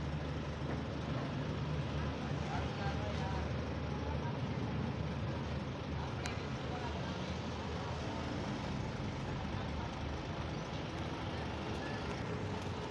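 Nissan Diesel truck's diesel engine idling steadily, a low even hum.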